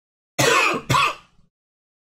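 A man coughing to clear his throat, two loud bursts in quick succession about half a second in. The cause is a sore throat.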